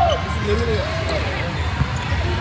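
Busy indoor volleyball gym: voices, short squeaks of sneakers on the sports-court floor and balls bouncing, over a steady hall rumble. A single sharp smack of a volleyball being hit comes near the end.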